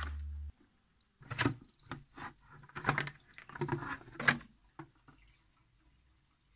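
Water splashing and dripping in a handful of short bursts as a submersible aquarium filter is lifted out of the tank, the loudest splash near the middle.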